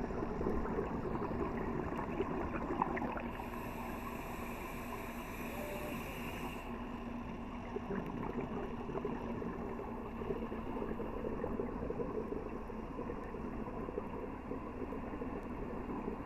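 Underwater scuba breathing heard through a camera's waterproof housing: exhaled air bubbling from a regulator, with a higher hiss from about three to seven seconds in.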